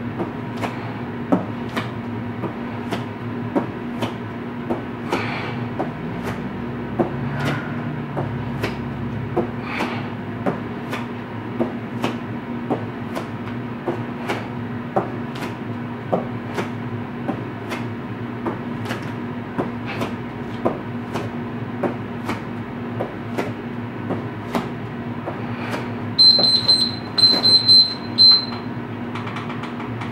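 An interval timer sounds a quick run of high electronic beeps near the end, marking the end of a 30-second work interval, with one more beep just after. Underneath runs a steady low hum with sharp clicks about once a second.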